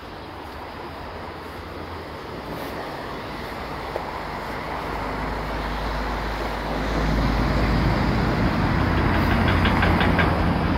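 City road traffic passing on a wide multi-lane avenue, a steady noise that grows louder through the clip, with a deep low rumble building in the second half as heavier vehicles go by.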